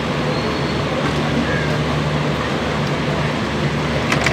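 Steady rumble of a passenger train's coaches rolling slowly along the track, with a constant low hum underneath.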